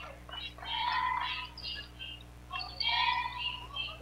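Basketball shoes squeaking on a hardwood court: several short, high squeals as players move in the half court.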